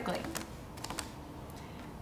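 A folded paper origami jumping frog pressed with a fingertip and hopping on a tabletop, giving a few faint paper clicks and taps in the first second.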